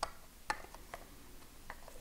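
A few faint plastic clicks and taps from an Insta360 One RS action camera's core module and 4K Boost module being handled and pressed together, the clearest about half a second in.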